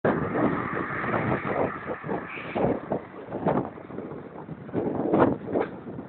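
Wind buffeting the microphone of a camera carried on a moving bicycle, in uneven gusty rushes.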